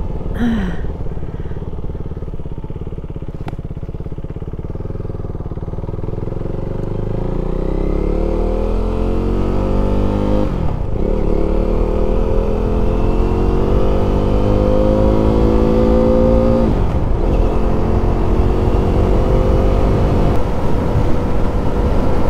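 KTM 390 Duke single-cylinder engine pulling away and accelerating through the gears: a low rumble for the first few seconds, then a steadily rising pitch, broken by upshifts about 11 and 17 seconds in, before it settles into a steady cruise.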